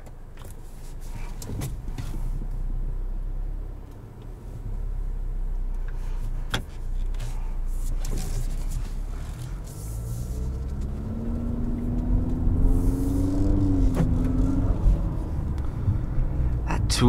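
Cabin sound of the 2022 Infiniti QX55's 2.0-litre variable-compression turbo four-cylinder under way in sport mode: a steady low engine and road hum, then from about ten seconds in the engine note climbs as the car accelerates, easing off near the end. A few light clicks sound early on.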